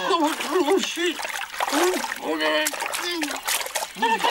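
Cartoon penguin character's gibberish voice in short, rising-and-falling babbling phrases, mixed with splashing water that is strongest near the end.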